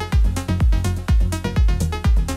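Melodic techno played from vinyl records: a steady four-on-the-floor kick drum about two beats a second under a stepping synthesizer melody.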